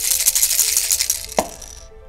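Two plastic Catan Starfarers mothership pieces shaken hard at once, the small balls inside rattling fast, shaken to roll the colours that set each ship's strength for a fight. The rattling stops with a sharp click about one and a half seconds in.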